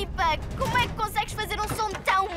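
A cartoon character's voice making short grunting, straining sounds without clear words, over a low steady rumble.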